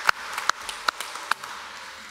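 Congregation applauding, with a few sharp single claps standing out above the rest; the applause dies away toward the end.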